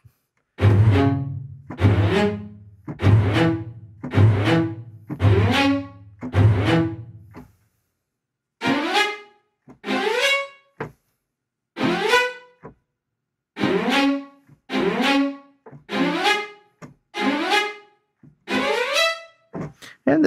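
Sampled string ensemble (Soundiron Hyperion Strings Micro, a Kontakt library) driven by its arpeggiator, playing short, fast rising runs of bowed notes about once a second. The first several runs have a deep bass underneath; after a brief pause, about seven seconds in, the runs go on higher, without the bass.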